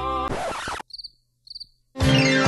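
Music cuts off abruptly under a second in, leaving near silence broken by two short cricket chirps about half a second apart.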